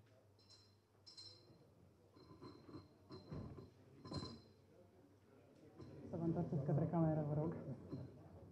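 A few faint, separate clinks of draw-ball capsules knocking against a glass draw bowl as the bowl is lifted and carried, in the first half. A faint voice, away from the microphone, is heard in the last couple of seconds.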